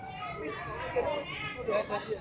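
Several people's voices talking and calling out at once, overlapping chatter among a group of footballers.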